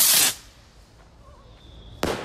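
Aerial firework launching with a short, loud hiss lasting about a third of a second, then a faint lull, and a sharp bang right at the very end as it bursts in the air.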